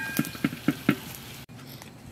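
Metal spoon tapping on a large metal cooking griddle while spreading chopped tomatoes over grilled eggplant halves: about four quick taps in the first second, then quieter.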